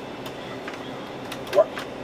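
Steady background hum with a few faint clicks from the buttons of an arcade-style gaming machine being pressed.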